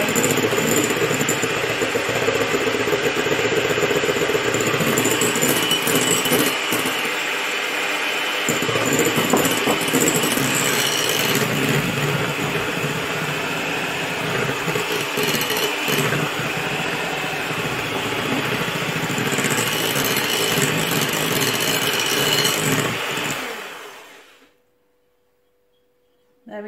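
Electric hand mixer with twin beaters running steadily, whisking egg whites and caster sugar into meringue in a glass bowl, with the sugar added while it runs. The motor cuts off near the end as the meringue reaches stiff peaks.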